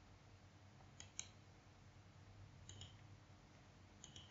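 Near silence, broken by a few faint computer clicks: two about a second in, and a couple more near the three-second mark.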